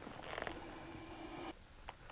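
A person humming faintly: a short buzzy note, then one held low note for about a second, followed by a small click near the end.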